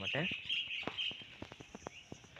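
Birds chirping, a wavering high twitter through the first second, with a scatter of light clicks after it.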